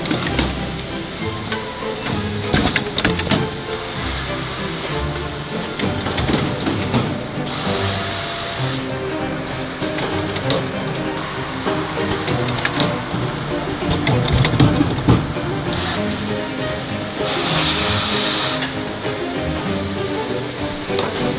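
Background music over the continuous clatter and clicking of a panel edge-banding machine at work. Two bursts of hiss, each a little over a second, come about 8 and 17 seconds in.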